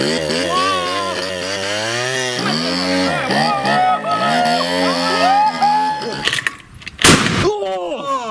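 Small scooter engine running and revving up and down unevenly, fed by an aerosol can sprayed straight into its intake. About seven seconds in, a single loud bang.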